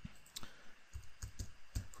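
Computer keyboard keys clicking faintly as a short username is typed into a login field. The clicks come singly at first, then more quickly in the second half.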